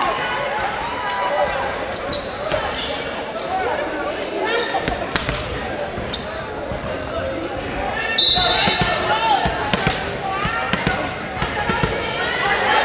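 Gymnasium sound between volleyball rallies: voices of players and spectators carry in the large hall, with a few short high squeaks of athletic shoes on the hardwood court and a few thuds of a ball being bounced.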